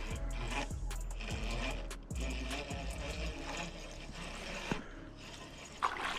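Small spinning reel being cranked to wind in a hooked crappie, its gears and bail clicking and whirring. Near the end there is a splash as the fish reaches the surface.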